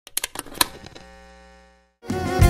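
Short logo intro sting: a quick run of sharp clicks in the first half second, then a sustained ringing chord that fades away near the end.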